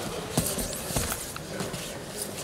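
Two MMA fighters grappling on the cage mat: scuffling, with two short thuds about half a second and a second in.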